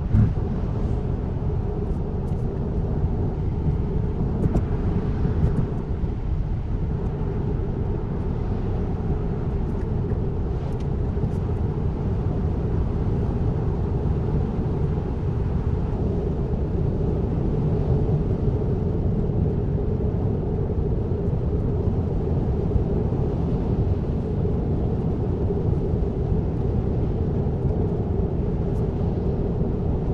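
Steady road and tyre noise inside the cabin of a Tesla electric car cruising at about 70 mph, a low, even rumble with no engine note. A short thump comes right at the start.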